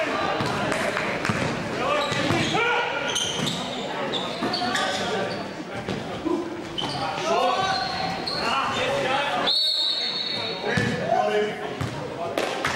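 Game sounds of indoor basketball echoing in a large hall: the ball bouncing on the hardwood court, sneakers squeaking and players calling out. About two-thirds of the way through, a single high whistle blast lasts about a second.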